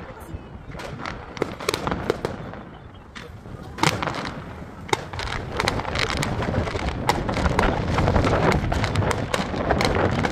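Fireworks going off: scattered sharp bangs in the first few seconds, then a dense run of crackling pops that builds and grows louder from about five seconds in.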